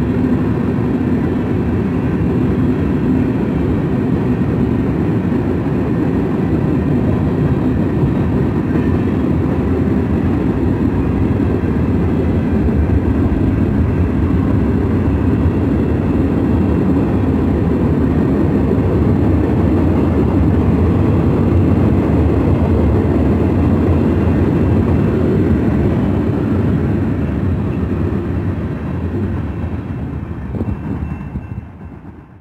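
Freight train cars rolling past close by: a steady, loud rumble of steel wheels on the rails, easing off a little near the end.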